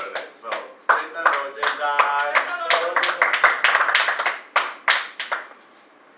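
A small group clapping unevenly, mixed with voices calling and cheering, including one held call about two seconds in; the clapping dies away shortly before the end.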